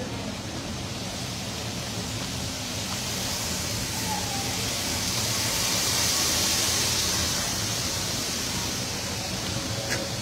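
Running noise of a passenger train heard from inside the carriage: a steady rush with a low rumble that swells to its loudest about six seconds in, then eases off.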